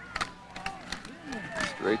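Field sound of a high school football play run up the middle: faint voices and a few sharp knocks in the first second as players collide at the line, then a commentator's voice near the end.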